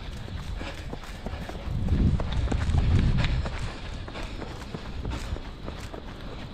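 A runner's footfalls on a dirt trail, repeating at a steady running pace. A low rumble of wind on the microphone swells in the middle and is the loudest sound.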